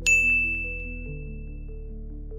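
A single bright ding right at the start, ringing on one high tone and fading out over about two seconds, over soft ambient background music of slow, held chords.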